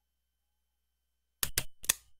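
Silence, then about one and a half seconds in, three sharp clicks of a computer mouse button in quick succession, the first two a double-click.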